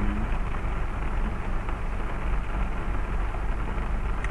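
Steady rain and road noise inside a moving car in a rainstorm: rain on the car and tyres hissing on the wet road over a deep, even rumble.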